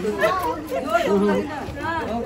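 Several people talking at once: lively chatter of a small group, with no other sound standing out.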